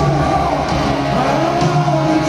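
A live rock band playing a slow power ballad in an arena, with electric guitars, bass and drums. About halfway through, a held note dips and then rises again in pitch.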